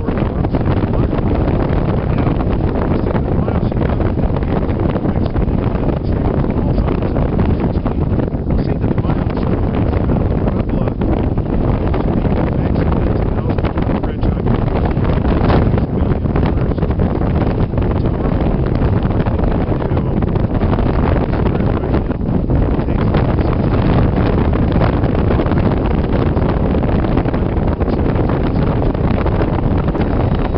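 Strong wind buffeting the camera's microphone: a loud, steady rushing noise that covers everything, with a man's voice partly buried under it.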